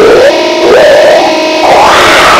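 Heavy metal music: loud distorted electric guitars, with a line that slides up and down in pitch over held notes.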